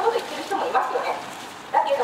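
A woman speaking Japanese into a handheld microphone, with a short pause in the second half and her voice coming back loudly near the end.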